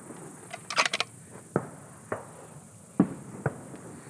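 Sharp clicks and light knocks from a prone shooter handling a rifle: a quick run of about five high clicks about a second in, then single knocks roughly every half-second to second.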